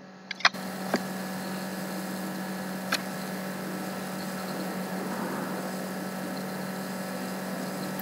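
A steady low electrical hum over background hiss, with a few faint clicks in the first three seconds.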